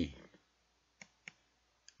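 Three faint, separate clicks of computer keyboard keys during text editing.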